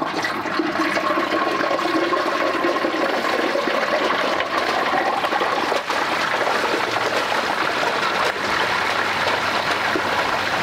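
Hot frying oil bubbling and sizzling hard as a whole turkey is lowered slowly into the pot. It is a loud, steady, rushing hiss that starts as the bird goes in.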